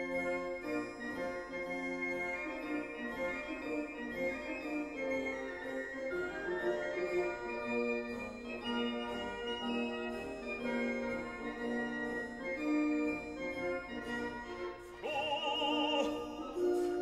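Background classical music of long held, organ-like chords, with an operatic singing voice with wide vibrato coming in near the end.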